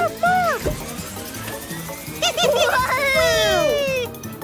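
Cartoon soundtrack: background music with short squeaky, chirping creature voices. Near the end comes a cluster of falling whistle-like sound effects.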